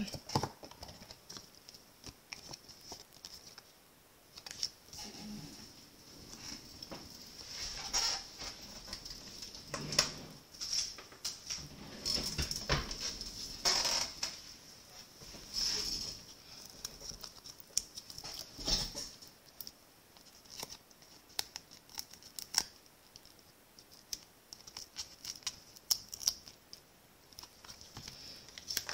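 Hands handling paper and cardstock crafting pieces on a desk: scattered soft rustles, scrapes and small taps, with a faint steady hiss underneath.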